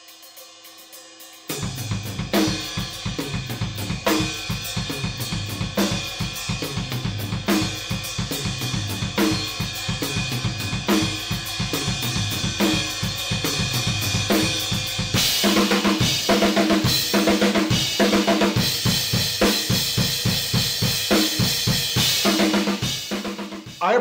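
Acoustic drum kit playing a steady rock beat of kick, snare and hi-hat, coming in about a second and a half in. About halfway through it turns heavier, with a wash of crash cymbals.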